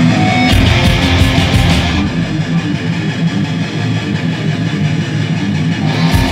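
Live punk band playing a song intro on distorted electric guitars and bass. Drums and cymbals crash in about half a second in and drop out at about two seconds, leaving the guitars and bass on their own until the drums return at the end.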